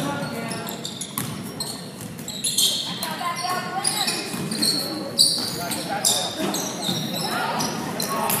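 Basketball being dribbled on a hardwood gym floor with sneakers squeaking in short high chirps, one sharp thud about five seconds in, and players' and spectators' voices echoing in the gym.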